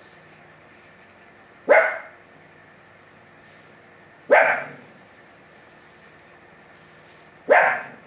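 A dog barking: three single, loud barks spaced about two and a half to three seconds apart.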